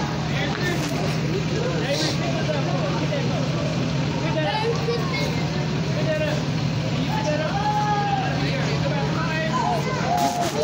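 A bus engine drones steadily, with people's voices chattering over it.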